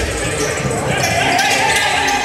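Basketball dribbled on a hardwood gym floor, the bounces ringing in a large hall, with voices over them.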